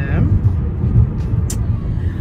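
Steady low road and engine rumble inside a moving car's cabin, with one short sharp click about one and a half seconds in.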